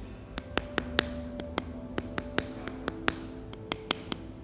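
Wooden spatula used as a paddle, slapping a lump of soft clay in a quick irregular run of light taps, about four a second, as the clay is beaten flat into a box shape. Faint background music with held notes underneath.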